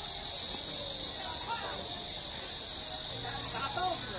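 A steady, high-pitched drone of summer insects, typical of a crickets or cicadas chorus, the loudest thing throughout, with faint chatter of people passing underneath.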